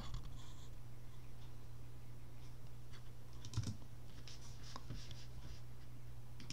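Faint, scattered clicks and taps of a computer keyboard over a low, steady hum.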